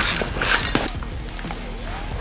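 Metal front-fork parts and axle clinking and scraping as the axle is slid through the scooter wheel's hub: two sharp scrapes in the first half second, then a few lighter clicks.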